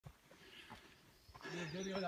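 Faint footsteps on a dirt trail, then a man's voice starting about a second and a half in.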